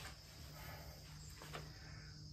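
Quiet outdoor ambience: a faint, steady high insect chirring with a low background hum.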